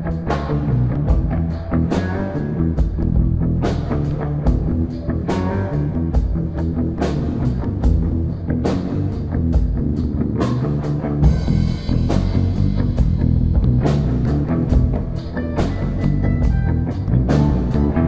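Live rock band playing an instrumental passage: electric guitar over a steady drum-kit beat.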